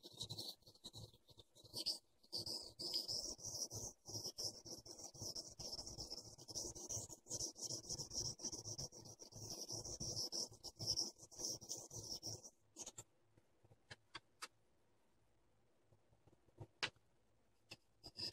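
A small steel clipper blade is rubbed back and forth on a 4000-grit Norton waterstone under light to medium finger pressure, giving a steady scraping of strokes. The scraping stops about two-thirds of the way through, and a few faint clicks follow.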